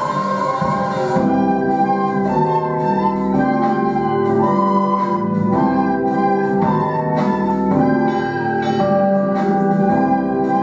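A children's ensemble of soprano recorders playing a simple tune in sustained notes, over an organ-like accompaniment that carries a lower part. A new phrase begins about a second in.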